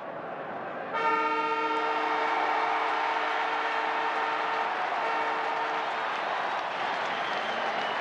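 Football ground's full-time siren sounding one long, steady blast of about five seconds over a cheering crowd, signalling the end of the match.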